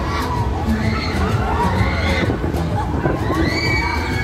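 Riders screaming and shouting on a swinging fairground thrill ride, several voices at once with a long high scream near the end, over a steady low rumble.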